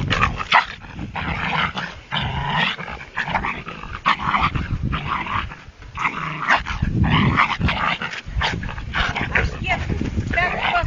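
Black dog barking over and over in short, quick bursts at a cat held up out of its reach.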